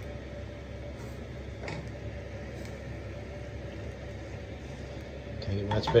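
Wooden spoon stirring fried rice in a large frying pan, with a couple of light scrapes, over a steady kitchen hum.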